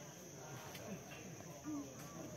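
Steady high-pitched chorus of insects, an unbroken shrill drone, with faint talking underneath.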